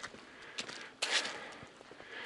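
A few footsteps of a walker on a dirt track strewn with dry fallen leaves, the clearest about a second in.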